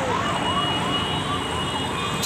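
An emergency vehicle siren yelping, its pitch rising and falling about three times a second, over the steady noise of road traffic.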